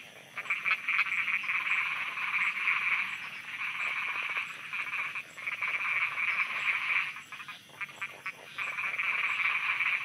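A dense chorus of many frogs croaking in rapid pulsed trills. It eases for a moment about halfway through, and again for over a second near the end, before building back.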